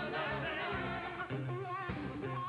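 A live band playing with a male lead vocalist singing held, wavering notes over guitar and rhythm section.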